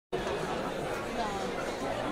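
Seated audience chattering, many voices overlapping at a steady level.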